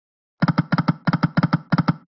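Slot machine game's reel-spin sound effect: a quick, even run of short clicks, starting about half a second in.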